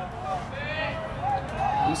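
Faint, distant voices: short bits of talk or calls from around the ballfield over a low outdoor background hum.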